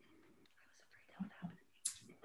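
Near silence broken by faint, brief voice sounds: two short low murmurs about a second in, then a short hiss just before the end.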